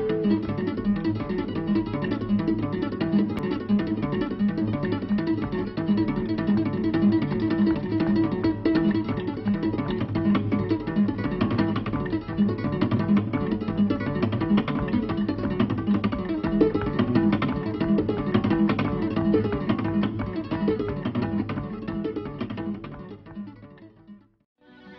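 Acoustic guitar played with two-handed tapping: a rapid, continuous stream of hammered and tapped notes that fades out near the end.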